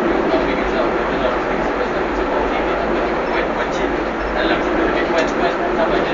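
Steady running rumble of a funicular railway car climbing a steep track, heard from inside the car, with voices underneath.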